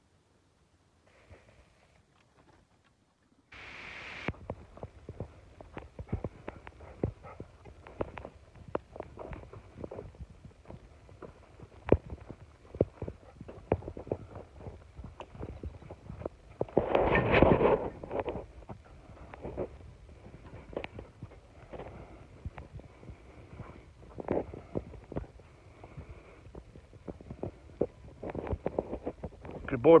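Footsteps crunching irregularly through dry leaves, twigs and mud, with brush scraping and rustling close by, starting a few seconds in after a near-silent opening. One louder burst of rustling noise comes a little past the middle.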